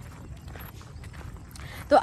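Faint footsteps of people walking, a soft irregular patter of steps. A woman's voice starts speaking near the end.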